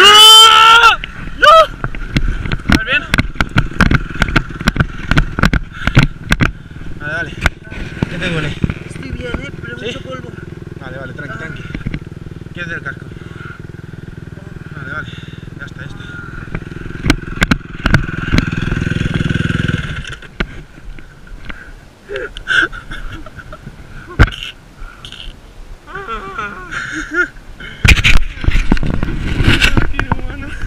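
A dirt bike engine revs up sharply, and a run of hard knocks and clatter follows. The engine then runs steadily at a low note for several seconds and cuts off suddenly about two-thirds of the way through.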